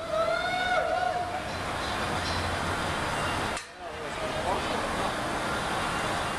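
A person's held shout, one long call lasting about a second, right at the start, over a steady rushing rumble. The rumble briefly drops out about three and a half seconds in.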